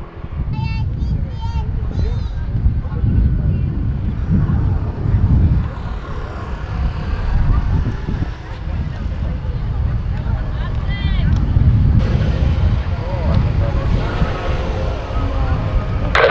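Distant airliner jet engines at idle, an Airbus A321 taxiing and lining up at the far end of the runway, under a loud, uneven rumble of wind on the microphone. A few short chirps come about a second in and again around eleven seconds.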